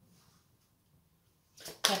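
Quiet room tone for about a second and a half, then a short intake of breath and a voice starting to speak near the end.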